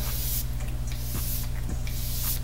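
Hiss of a continuous-mist facial spray bottle being pressed and held, puffing a fine mist twice, about a second apart.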